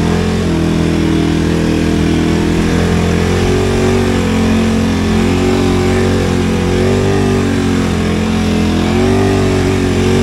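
KTM motorcycle engine running steadily under way, its note shifting up and down a little with the throttle.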